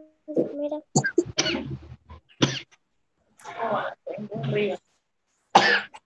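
Several short bursts of coughing and indistinct voice sounds from children on a video call, separated by brief silences.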